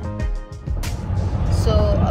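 Background music with a beat for the first second, then a cut to the steady low rumble of road and engine noise inside a moving car on a highway.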